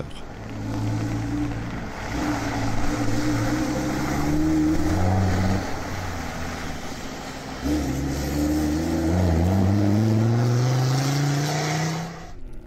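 Land Rover Defender off-road rally car's engine pulling hard under acceleration, its pitch climbing in long sweeps. It eases off briefly around the middle, then winds up again for the last few seconds.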